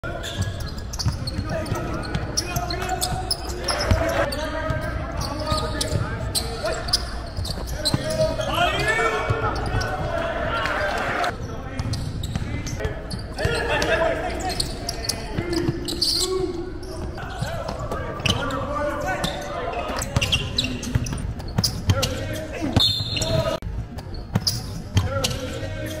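Basketball game in a gym: a ball bouncing on the court amid sharp knocks, with indistinct voices of players and spectators throughout.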